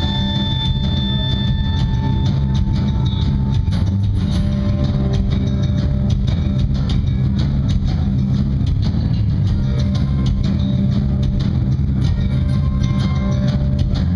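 Live rock band playing loud and steady: guitars, bass guitar and drum kit.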